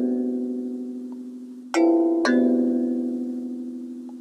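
Instrumental background music with no vocals. A bell-like mallet chord is struck twice, half a second apart, about two seconds in, and each chord rings and fades slowly. The fading tail of an earlier chord fills the first part.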